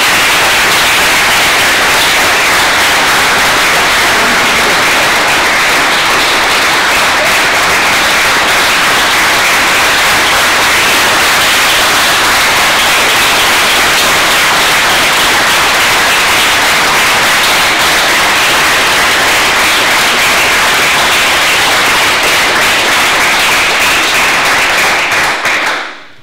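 A roomful of people applauding, loud and steady throughout, then dying away abruptly near the end.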